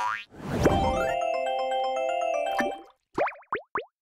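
Short cartoonish music sting for an animated logo: it opens with a sudden rising swoop, then plays a bright jingle of stepped tones that stops just before three seconds in, followed by a few quick springy pitch swoops near the end.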